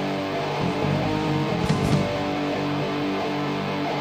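Crust punk band playing live: distorted electric guitar and bass holding heavy chords at a steady loud level, with a single crash just under two seconds in.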